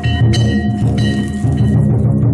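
Danjiri festival float music: a big taiko drum beating steadily, with hand-held brass gongs or cymbals clanging and ringing over it.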